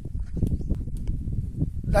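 Wind buffeting an outdoor microphone: an uneven low rumble, with a few faint clicks.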